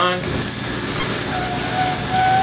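Gas ribbon burner for bending neon glass tubing, its flame running the length of the burner with a steady rushing hiss. A steady whistling tone joins about a second and a half in.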